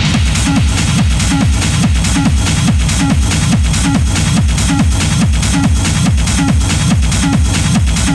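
Hard techno track playing: a fast, steady kick drum beat with a dropping pitch on each hit, under busy hi-hats.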